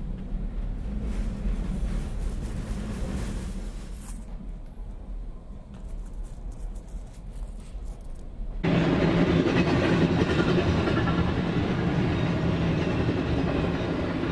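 A low rumble with a few faint clicks, then, about eight and a half seconds in, a sudden cut to the louder, steady noise of a passenger train running past close by, with a strong low hum under it.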